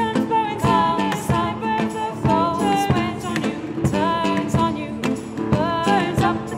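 A band playing a folk song live: a nylon-string classical guitar picked under a sung melody.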